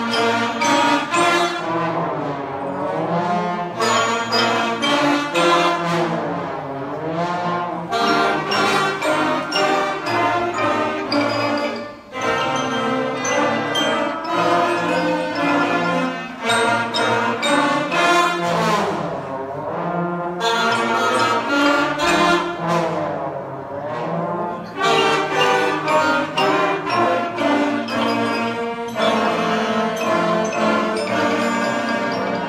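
Elementary school concert band playing, the trombone section swooping its pitch up and down in slide glissandos several times. There is a brief break in the sound about twelve seconds in.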